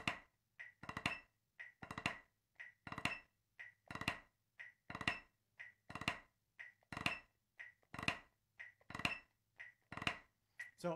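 Snare drum played in triple-stroke ruffs, about one a second: three quick grace notes run into a main stroke, with a lighter single stroke between ruffs. It is a rudiment exercise for controlling the shape of the ruff, heard through a video-call microphone.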